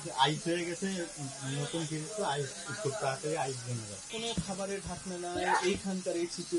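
A man talking, with background hiss and room noise: speech only.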